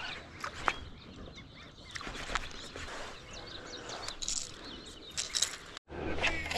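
Birds chirping in the background over low outdoor noise, with a few sharp clicks scattered through. The sound drops out briefly near the end.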